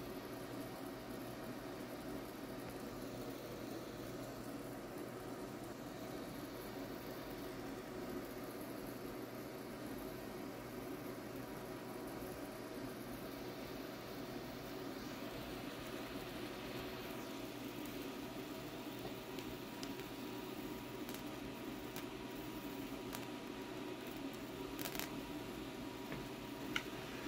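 A solid-state Tesla coil running continuously at 4.5 MHz, its plasma flame giving a steady, faint hiss with a low hum. A few faint clicks come in the last few seconds.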